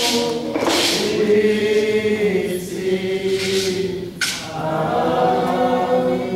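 A congregation singing a hymn together in long held notes, with no instruments clearly heard.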